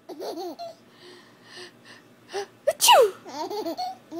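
Baby giggling in short bursts. About three seconds in, an adult's fake sneeze, a sharp 'ah-choo' falling in pitch, sets off another burst of baby laughter.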